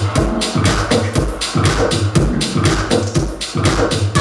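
Deep tech / tech house DJ mix playing, with a steady kick drum about twice a second and bright hi-hats between the beats.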